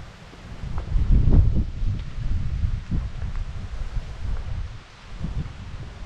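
Wind buffeting the microphone: an uneven low rumble that swells in a gust about a second in, then eases.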